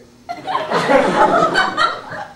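Audience laughter breaking out about a third of a second in, loud for about a second and a half, then dying down near the end.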